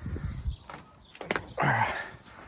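Handling and movement noise with a low rumble, two sharp clicks about a second apart, then a short breathy vocal sound near the end.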